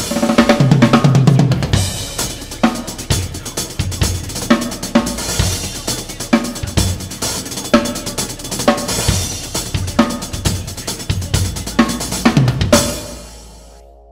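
Acoustic drum kit played in a steady beat: kick, snare, hi-hats and crash cymbals. Near the end the playing stops and the last cymbal rings out and dies away.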